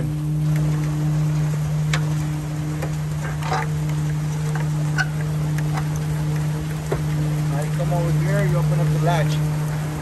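Diesel road tractor idling with its PTO engaged: a steady low drone. A few sharp metal clicks sound over it as steel pins are pulled from the belt trailer's rear hatch latch.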